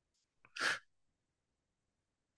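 A single short, sharp breath noise from a man at the microphone about half a second in; the rest is near silence.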